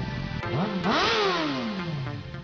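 Music with a motorcycle engine sound effect that revs up in pitch and then drops back down, with a rushing hiss at its peak.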